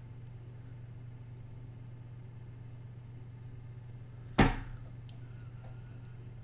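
A steady low hum, with one sharp knock about four and a half seconds in.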